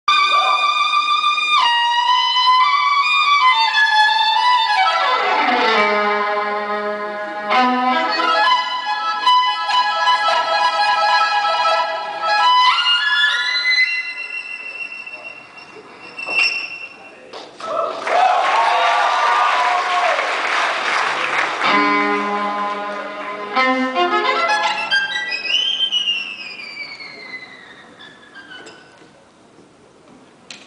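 Solo fiddle playing a free-time introduction of quick runs and long sliding notes, with a short burst of crowd noise partway through. It ends on a long downward slide that fades out.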